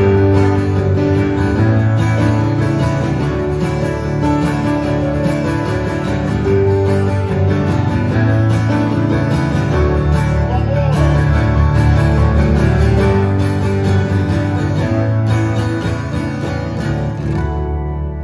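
Live acoustic guitar and electric keyboard playing an instrumental passage of a slow song, with held low keyboard notes under the guitar. The music thins and dies away near the end.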